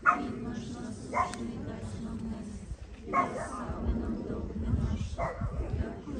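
A dog barking four times at uneven intervals, over a low murmur of voices.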